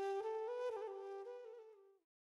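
Quiet background flute music: a few held notes that step up and then back down, fading out near the end.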